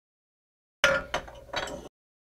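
Three quick clinks about a third of a second apart, starting just under a second in, each with a short ringing tail.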